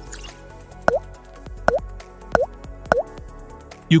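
Background music with four short water-drop plops, each a quick dip and rise in pitch, coming roughly every three-quarters of a second.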